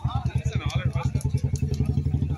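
An engine idling with a fast, even pulse of about fifteen beats a second, with people talking over it.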